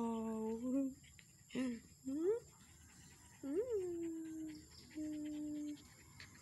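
A woman's voice in long, drawn-out cooing calls without words: a held, slightly falling "uwa", a short call, a quick rising one, one that swoops up and down and is held, and a flat held tone near the end.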